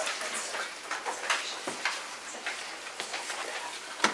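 Papers being handled: scattered faint rustles and small clicks, irregular, with no steady rhythm.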